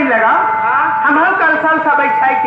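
A man's voice delivering stage dialogue, loud, with one steady held tone sounding behind it through most of the stretch.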